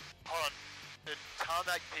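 Speech only: voices over a light aircraft's headset intercom in two short bursts, with brief dropouts to near silence between them.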